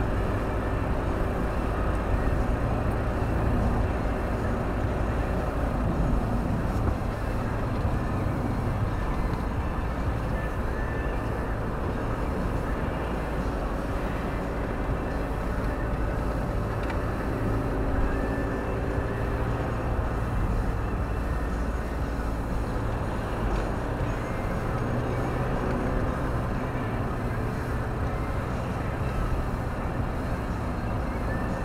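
Steady road and engine noise of a car driving, heard from inside the cabin: a low rumble with tyre noise, and the engine note shifting up and down midway.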